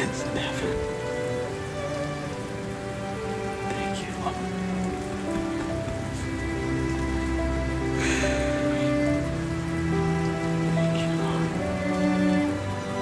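Slow background music of long held chords that shift every second or two, over a steady rain-like hiss. A short burst of hiss comes about eight seconds in.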